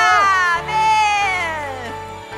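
A worship choir's closing vocal flourish: several voices slide down together in one long falling glide over a held accompaniment chord as the song ends, fading out.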